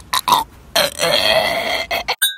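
A person's voice making a couple of short grunts, then one long, drawn-out, burp-like noise lasting about a second.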